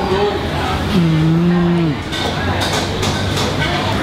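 A man's low, closed-mouth "mmm" of enjoyment while chewing, held on one steady pitch for about a second.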